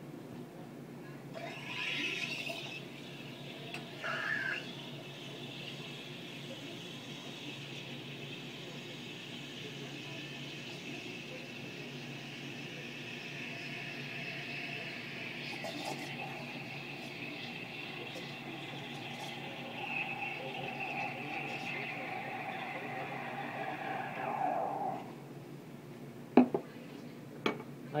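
Espresso machine steam wand steaming milk in a stainless steel pitcher: a steady hiss with a high-pitched whistle that holds for about twenty seconds, then cuts off. A few sharp knocks follow near the end.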